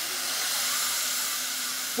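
A narrow-gauge steam locomotive standing in steam, hissing steadily as steam escapes from the valves on top of its boiler, a sign that the boiler is up to pressure and ready to run.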